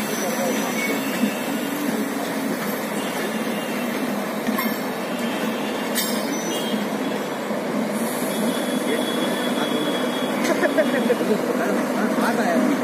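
Humsafar Express passenger coaches rolling slowly past on the rails as the train pulls out, giving a steady rumble of wheels on track. There are two sharp clicks, about four and a half and six seconds in.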